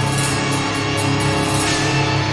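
Metal song playing in a slow, heavy section: sustained chords with a steady, evenly spaced beat.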